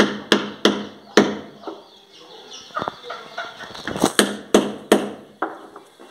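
Knife chopping raw chicken pieces on a wooden cutting board: four sharp strikes in about the first second, then after a pause another run of four strikes around four to five seconds in.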